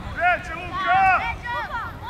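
High-pitched children's voices shouting and calling out in short arching calls, loudest about a second in, over light wind noise.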